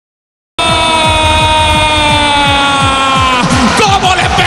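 A stadium crowd's horn sounding one long, loud note that sags slowly in pitch and drops away near the end, over rapid drumbeats. It starts abruptly about half a second in.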